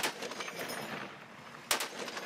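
Two sharp gunshot cracks, one at the start and one about a second and a half later, over a steady hiss of outdoor field noise.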